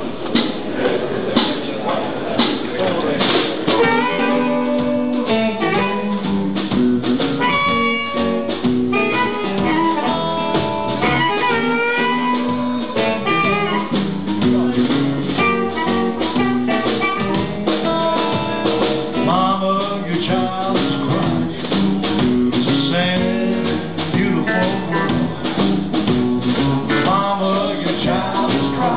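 Live blues band playing a slow tune: a diatonic harmonica plays wailing, bending lead lines over electric guitar and drum kit.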